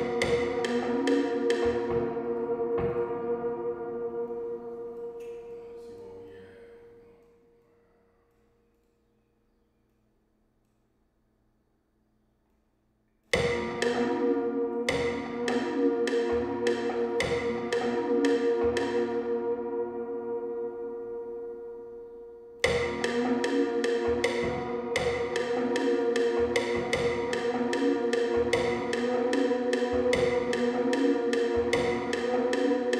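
A beat in progress, a loop of sharp percussive hits over a steady tone, playing back through studio monitors. It fades out over a few seconds to silence. About five seconds later it starts again abruptly, dips in level, and restarts abruptly again about three-quarters of the way through.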